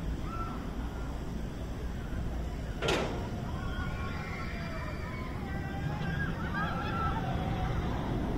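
Wind rushing over the microphone on a descending tower swing ride, with one sharp knock about three seconds in and faint, distant voices over the second half.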